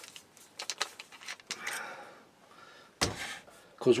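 Handling sounds of a cordless drill and a wooden dowel: a few light clicks and a brief rubbing, then a single knock about three seconds in as the drill is set down on the workbench. The drill motor is not running.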